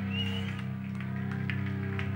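Live band's guitar and bass amplifiers holding a steady low drone between songs, with a brief high feedback whine near the start and a few small clicks.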